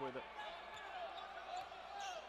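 Low background sound of a live basketball game in an arena: a steady crowd hum with a few faint short squeaks from the court.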